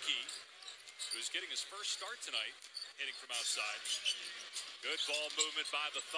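A basketball being dribbled on a hardwood arena court, its sharp bounces heard under ongoing talk.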